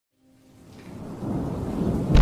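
A low rumble with a hissing, rain-like noise, fading in from silence and growing steadily louder.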